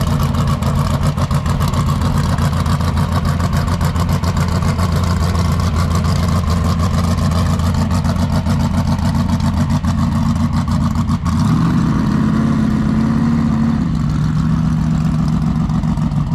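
Engine of a Bronco-bodied off-road race car running loud and steady under load, its pitch stepping up about eleven seconds in.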